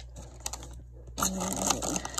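Plastic snack bag crinkling and rustling as it is handled and lifted out of a cardboard box, louder from about a second in.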